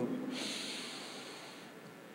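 A man takes one long, deep sniff through his nose, lasting over a second, smelling a bunch of jasmine flowers held to his face.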